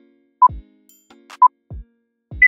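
Countdown timer beeping twice, one short steady beep a second, over electronic background music with deep bass hits that fall in pitch.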